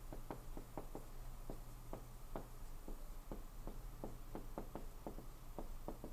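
Dry-erase marker writing on a whiteboard: an uneven run of short, light taps and strokes, about four a second, as the letters are written.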